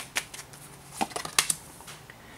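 Oracle cards being handled by hand, with one card drawn from the deck and laid on a wooden table: a few short, sharp card snaps and clicks, the loudest at about a second and a half in.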